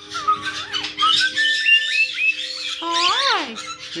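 Pet caique parrots whistling and chirping: a quick run of short rising and falling whistles with one held note in the middle, then a single drawn-out rising and falling call about three seconds in.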